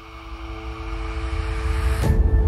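Intro sound effect: a rumbling whoosh with two held tones, swelling steadily louder as it builds toward a hit at the end.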